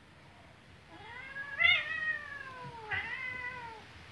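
A cat meowing twice: a long drawn-out call that starts about a second in, rising and then sliding down in pitch, and a shorter falling call just before the end.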